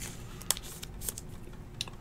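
Quiet handling of a trading card in a clear plastic sleeve: a few light clicks and soft plastic rustles. The sharpest click comes about half a second in.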